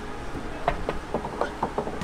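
Golf ball clattering against the hard obstacle of a mini golf hole: a quick run of light clicks, about five a second, for about a second.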